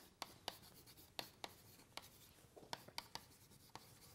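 Chalk writing on a blackboard: a string of faint, sharp taps and short scratches as a few letters are chalked, irregularly spaced across the few seconds.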